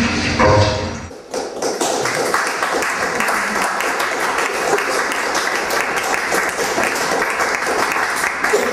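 Electronic noise music with a deep low rumble stops abruptly about a second in, and an audience applauds with a dense, steady patter of clapping for the rest of the time.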